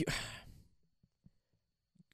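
A man's sigh: one breathy exhale, about half a second long, at the start, trailing off from a spoken word.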